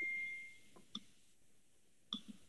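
Near silence with a faint, steady, high electronic tone that fades out within the first half second, then one brief faint blip about a second in.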